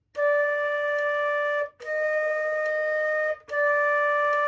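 Concert flute playing three sustained notes, D, E-flat, D, each held as a half note of about a second and a half with a short breath gap between them; the middle note is a step higher. A slow beginner scale-builder warm-up.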